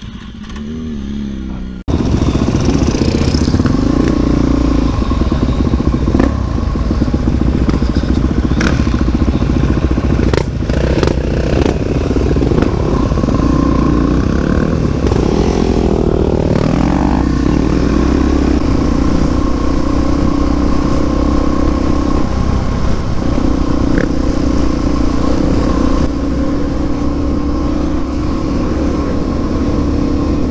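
Supermoto motorcycle engine running under way, recorded on the rider's helmet camera, with steady road and wind noise. It comes in abruptly about two seconds in after a quieter opening. Near the middle the engine pitch swings up and down with a few short knocks.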